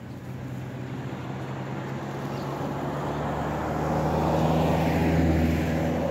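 A motor vehicle's engine hum, low and steady, growing louder over the second half and peaking near the end as a vehicle passes on the road.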